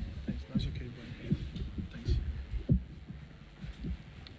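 Microphone handling noise as a live microphone is passed between hands and fitted onto a stand: a run of irregular low thumps and bumps with a few faint clicks.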